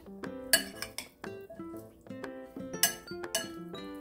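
Metal spoon clinking against a ceramic bowl while stirring diced mango and salted egg: a few sharp clinks, about half a second in and twice near the end, over background music.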